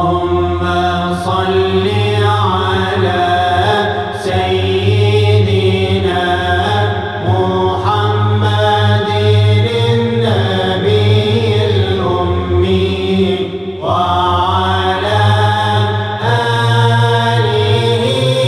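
Devotional vocal chant: a voice sings a slow melody in long held notes that slide up and down in pitch.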